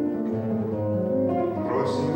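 Live jazz combo playing between vocal phrases, with acoustic guitar and double bass prominent.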